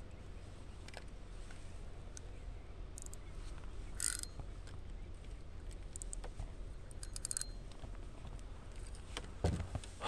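Faint scattered clicks and ticks of a fishing rod and reel being handled, with a quick run of clicks about seven seconds in, over a low steady rumble.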